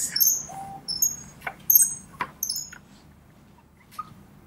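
Birds chirping: a string of short, high chirps that slide down in pitch, clustered in the first two to three seconds, with a few soft clicks among them.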